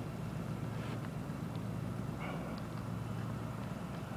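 Steady low outdoor rumble with no clear single source.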